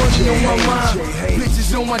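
Hip hop music: a beat with heavy, steady bass under a voice rapping or chanting.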